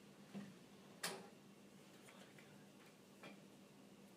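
Near silence: room tone broken by three faint, short clicks, the sharpest about a second in.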